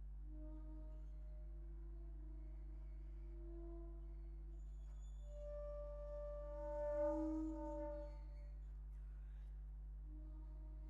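Bass flute playing soft, sustained low notes with a breathy tone. It swells louder from about five and a half seconds in, peaks near seven seconds, then fades back. A steady low hum sits underneath.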